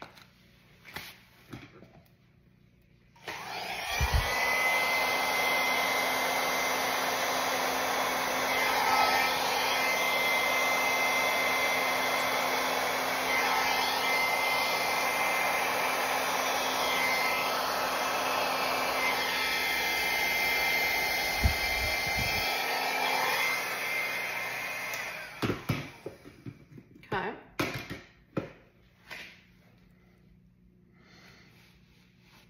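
Hair dryer fitted with a narrow nozzle, blowing wet acrylic pour paint across a canvas. It is switched on about three seconds in, runs steadily with a constant high whine for about twenty seconds, then is switched off. A few light knocks follow near the end.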